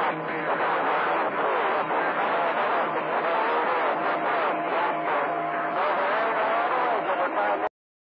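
CB radio receiving long-distance skip on channel 28: several voices overlapping and garbled through noise, too jumbled to make out. The sound cuts off suddenly near the end.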